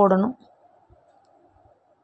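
The last word of speech, then faint clicks and rustling of flat plastic craft wire strips being pulled and knotted by hand.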